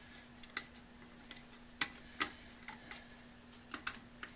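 Sharp, scattered clicks and taps as the junction box cover of an electric lathe motor is handled and seated onto the box, about half a dozen, with the strongest near the middle. A faint steady hum runs underneath.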